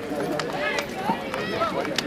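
Indistinct voices talking and calling out over one another, none of it clear enough to make out.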